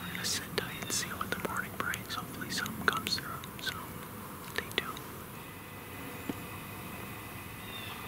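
A man whispering close to the microphone, stopping about five seconds in.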